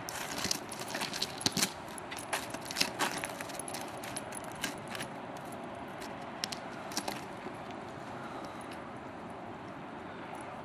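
A dog digging at ice-crusted snow, its paws and claws breaking the crust in irregular sharp crunches and clicks that thin out after about seven seconds.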